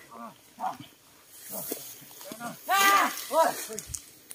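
A voice giving several drawn-out calls that each rise and fall in pitch. The loudest and longest call comes about three seconds in, with a shorter one just after.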